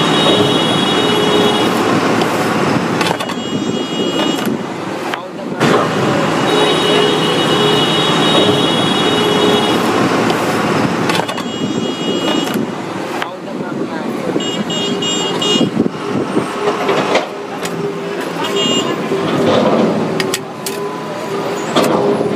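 Steady road traffic with vehicle horns sounding repeatedly: a couple of blasts held for two or three seconds, then several shorter toots.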